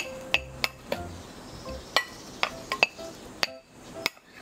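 A plastic rice paddle tapping and scraping against a glass mixing bowl as seasoned rice is mixed with gentle patting strokes. It makes a run of light, irregular clinks.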